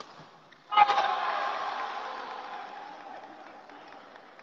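Voices break into a sudden loud shout and cheer about a second in, at a point won in a badminton rally, then fade away over the next few seconds.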